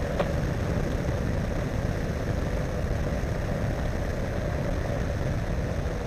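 Engine and pusher propeller of a weight-shift ultralight trike running steadily in flight, heard from close behind the propeller on the tail boom.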